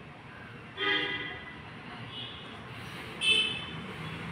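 A vehicle horn honks twice in short toots, about a second in and near the end, with a fainter toot between them, over steady outdoor street noise.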